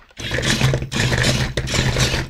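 A 2020 Sharper Image fighting robot toy's small electric drive motor and plastic gears whirring steadily as it turns left on command from its infrared remote. The whir starts about a quarter second in.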